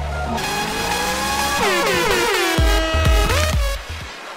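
Heavily pitch-shifted, layered effects-edit audio: many copies of a pitched sound stacked on each other, held steady at first, then sliding down in a cluster of falling sweeps in the middle and rising again near the end, over deep booms, before cutting back just before the end.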